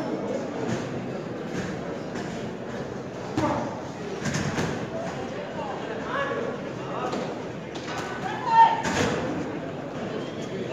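Spectators' voices and shouts in a large hall, with several dull thuds of gloved boxing punches. The loudest moment, a shout together with a thud, comes near the end.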